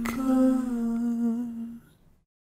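The close of a worship song: a voice holds one long final note, hummed or sung on a vowel, with a short click just after it begins. The note fades out near the end into silence.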